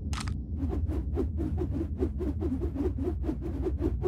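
Cartoon sound effect of an orange life raft moving through space: a rapid, even rhythm of short strokes, about five a second, over a low steady rumble.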